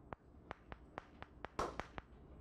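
Chalk on a blackboard while characters are written: a faint run of sharp ticks, about four a second, with a longer scratchy stroke about one and a half seconds in.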